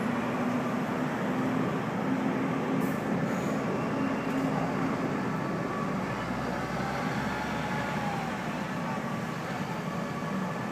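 Steady hum of a vehicle engine over city background noise, with a low droning tone through the first half and faint gliding tones in the middle.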